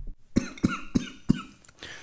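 A man coughing four times in quick succession, about three coughs a second.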